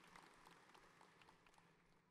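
Faint scattered applause from a large audience, dying away.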